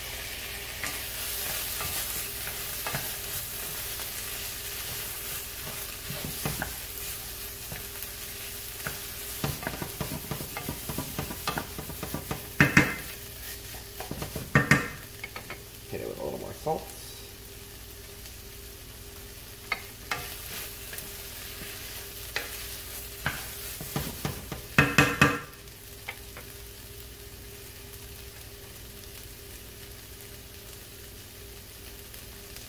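Diced vegetables and fresh tomatoes sizzling in a stainless steel sauté pan as they are stirred, the spoon knocking against the pan now and then, with a cluster of louder clanks about halfway and again near 25 s. The sizzle grows quieter in the last few seconds.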